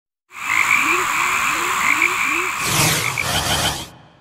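A chorus of frogs croaking: a steady high trill over a run of short, low, rising calls, growing denser past the midpoint and cutting off suddenly just before the end.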